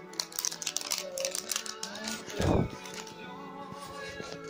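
Rapid crackling and clicking of the plastic wrapping on an LOL Surprise doll ball being picked at and peeled, over steady background music. A single low thump comes about two and a half seconds in.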